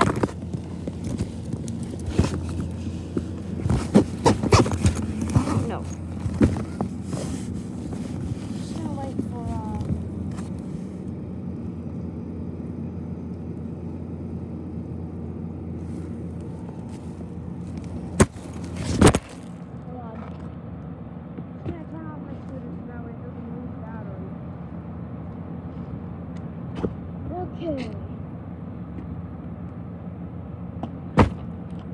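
Handling noise from a recording phone in a backpack: fabric rubbing and knocking against the microphone. There are many knocks and rustles in the first third over a steady low hum. A loud knock comes just before two-thirds of the way through, after which the hum drops and only scattered knocks remain.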